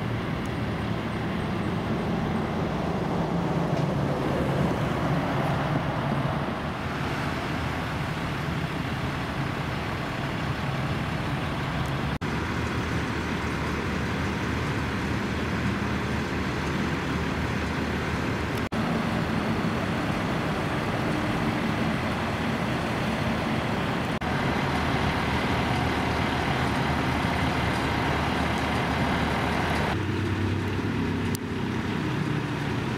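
Fire trucks' engines running at idle with street traffic noise, a steady low rumble with no siren or horn, broken by a few abrupt cuts between shots.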